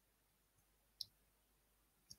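Near silence in a pause between phrases, broken by a single faint, very short click about a second in.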